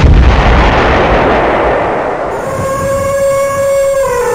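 Logo-animation sound effect: a loud boom that fades slowly as a long rumble. About two and a half seconds in, a steady held tone joins it.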